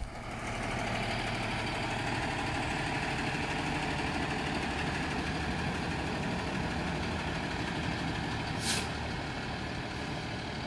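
A large motorhome's engine running steadily as it slowly pulls its enclosed trailer into line, with one short hiss of air about nine seconds in.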